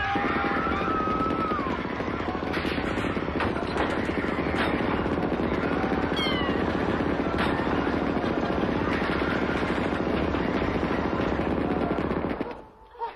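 A loud, steady din that cuts in and cuts out abruptly, with a woman's screams over it near the start and again about six seconds in.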